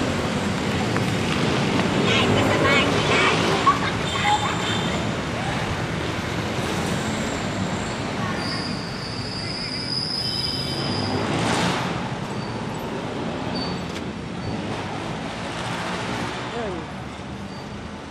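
Busy city road traffic: engines and tyres of passing jeepneys, tricycles and other vehicles, with faint voices in the background. A thin high whine sounds for about two seconds near the middle, and a vehicle passes close about two-thirds of the way through.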